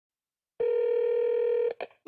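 Telephone ringback tone heard over the line: one steady ring of about a second, starting about half a second in, followed by a short click as the call is answered.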